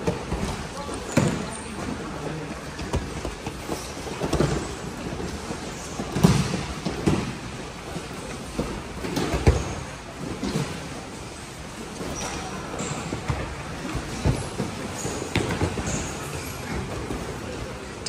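Wrestlers drilling on foam mats in a large hall: irregular thuds of bodies and feet landing on the mats, a few short high squeaks, and a background murmur of voices.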